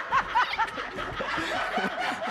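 Laughter: about four quick, high-pitched ha-ha bursts in the first second, trailing into softer chuckling.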